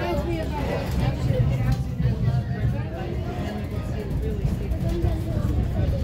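Indistinct passenger chatter over the steady low rumble of a moving passenger train, heard on board.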